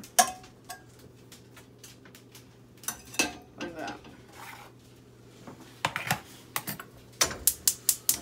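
A knife and butter clinking against a nonstick frying pan. From about six seconds in, the rapid clicking of a gas stove's burner igniter, about five sharp clicks a second, as the burner is lit.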